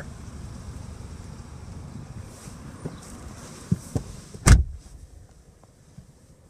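Electric power-seat motor running as the seat is adjusted, with a few light clicks. A loud thump comes about four and a half seconds in, after which the sound drops away.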